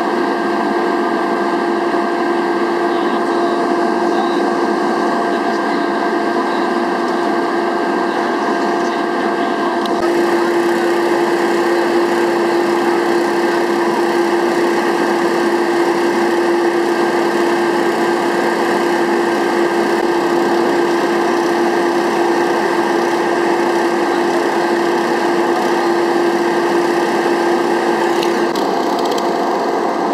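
A small engine running steadily at constant speed, loud and close, with a constant hum over a dense mechanical noise. The hum's tone and level shift slightly about a third of the way in and again near the end.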